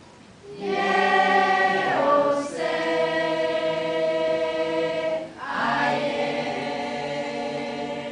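A group of children and an adult woman singing together without accompaniment, in long held notes. There are three phrases: one begins about half a second in and slides down in pitch around two seconds, a second is held until just past five seconds, and a third runs on after a short breath.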